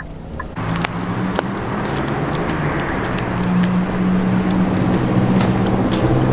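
Steady low engine hum over a rush of traffic noise, slowly growing louder. It starts abruptly about half a second in, after a quieter moment.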